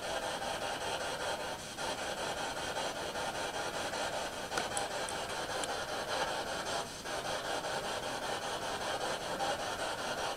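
A ghost-hunting spirit box, a radio sweeping rapidly through stations, giving a steady hiss of static, with brief dropouts about two seconds in and again near seven seconds.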